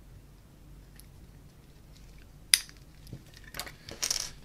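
Handling of a metal guitar pedal and a small allen key: a quiet stretch, then one sharp click about two and a half seconds in, followed by a few lighter clicks and knocks near the end.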